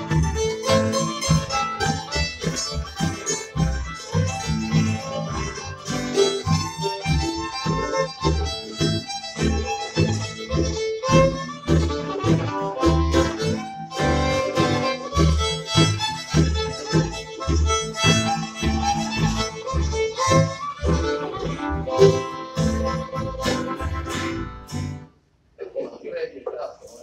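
Acoustic bluegrass band playing live: upright bass, fiddle, acoustic guitar and mandolin, with a steady plucked bass beat under the fiddle's melody. The tune ends about a second before the end.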